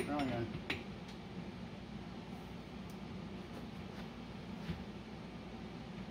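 A few light metallic clinks of an open-end wrench against the fittings of a HydroVac vacuum brake booster while its top lock nut is adjusted, over a steady low hum.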